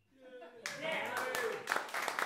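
Small audience starting to applaud about half a second in, quickly building to steady hand-clapping.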